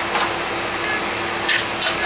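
Cabin noise inside a 2005 Gillig Phantom transit bus: the steady drone of its Cummins ISL diesel and ventilation with a constant hum, and a few sharp rattles, two close together near the end.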